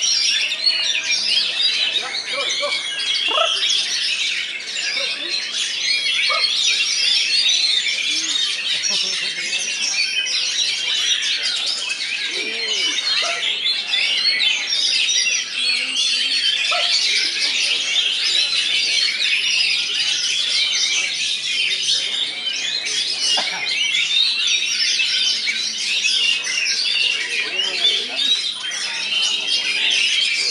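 Many caged Oriental magpie-robins (kacer) singing at once in a dense, unbroken chorus of rapid high chirps and whistles.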